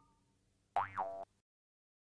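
A cartoon 'boing' sound effect, about half a second long and about a second in, its pitch dipping and springing back up. At the start, the last of a ringing chime fades out.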